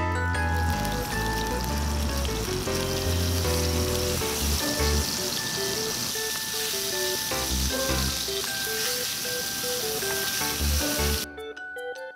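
Ground beef patties sizzling as they fry in an oiled frying pan, a steady hissing sizzle under background music with a bass line. The sizzle cuts off about a second before the end, leaving only the music.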